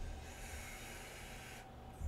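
Quiet pause with a faint breath, a soft hiss that stops near the end, over low room rumble.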